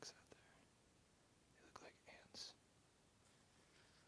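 Near silence with a man's faint whisper of a word or two about two seconds in.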